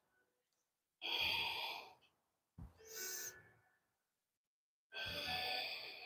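A woman's audible yoga breathing: a long breath about a second in, a shorter one near three seconds, and another long one near the end, each drawn in or let out as she moves between arching up and rounding the spine.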